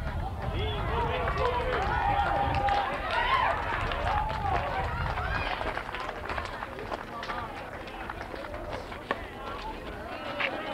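Distant voices calling out across an open ball field, with a low rumble through the first half and a single sharp knock about nine seconds in.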